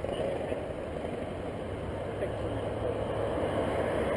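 A steady low rumble of a vehicle idling close by, with faint voices in the background.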